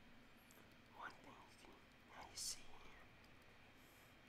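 A man's faint whispered mutter of a few syllables, with a sharp hissing 's' sound about two and a half seconds in. The rest is near silence.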